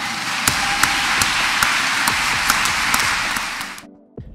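Church congregation applauding: dense clapping that cuts off suddenly near the end.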